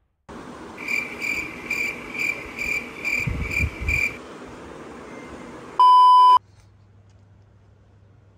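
A row of eight short electronic beeps, about two a second, over a hissy background, followed about six seconds in by a single loud, steady bleep tone lasting about half a second.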